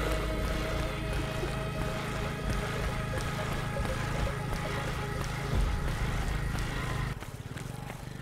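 Background music mixed with the sound of running outdoors: footfalls and wind rumble on the microphone. The sound drops suddenly to a quieter level about seven seconds in.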